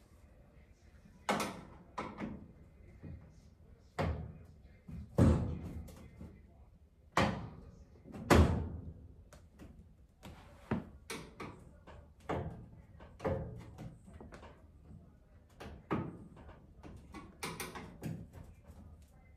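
Irregular sharp knocks and clunks from a clothes dryer's cabinet and front as it is worked on by hand: about a dozen, the loudest coming in the first half.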